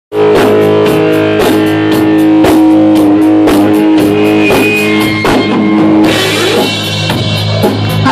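Live hard rock band playing: electric guitars holding sustained chords over a steady drum beat of about two hits a second, loud throughout.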